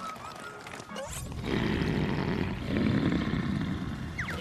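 A cartoon pony's long, strained grunt through gritted teeth, an effortful vocal push that starts about a second in and lasts over two seconds.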